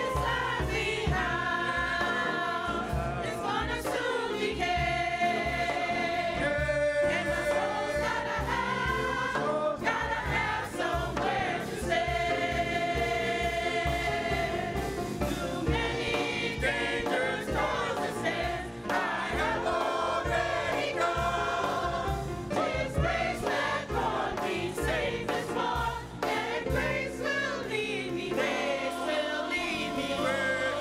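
Large gospel choir of men and women singing together, accompanied by music with a regular low beat.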